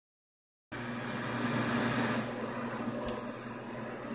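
Yaesu FT-890 HF transceiver's speaker giving out steady static hiss from a band with no signals on it, only noise. The hiss starts just under a second in, with a single short click about three seconds in.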